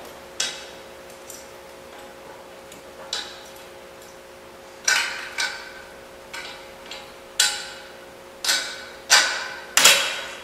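Metal parts clinking and knocking: a long steel bolt and washers being worked through the holes of a tubular steel handle and seat arm, about a dozen irregular sharp taps with short metallic ringing, the loudest near the end.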